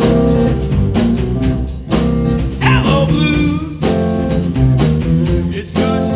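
Live blues band playing: electric guitar over a drum kit and bass guitar, with regular drum hits and bending guitar notes.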